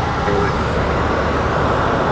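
Steady road noise inside a truck's cabin driving at highway speed.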